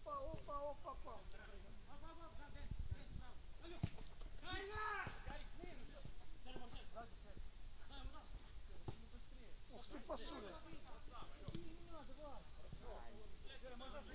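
Faint players' voices calling and shouting on the pitch during a small-sided football match, with a few sharp thuds of the ball being kicked.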